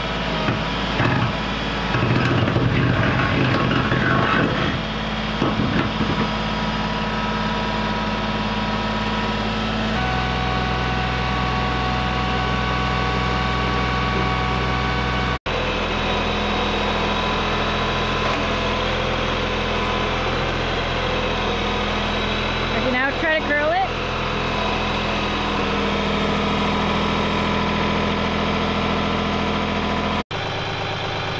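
Kioti compact tractor's diesel engine running steadily while its front loader pushes a small wooden shed. The engine's pitch changes about a third of the way in, and a short wavering squeal comes through about three quarters of the way in.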